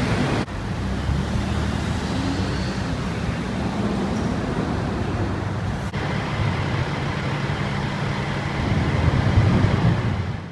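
Steady road traffic rumble of vehicle engines and tyres, growing louder near the end as a vehicle passes.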